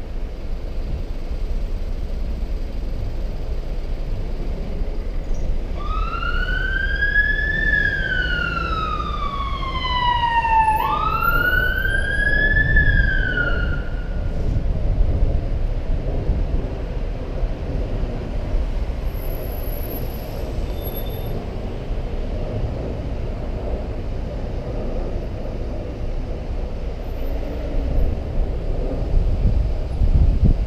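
An emergency vehicle siren wailing in slow rising and falling sweeps for about eight seconds, over steady street traffic noise.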